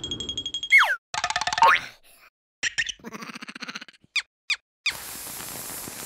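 Cartoon sound effects: a high ringing tone fades out in the first second, then a falling squeaky glide and a string of short squeaky cartoon vocalizations and pitch slides from the dazed larva characters. From about five seconds there is a steady hiss as the larva's tail burns.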